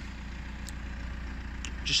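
Steady low rumble with a faint hiss of outdoor background noise, and one faint click about two-thirds of a second in.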